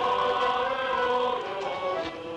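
A choir singing long, held notes, loud and steady, as music.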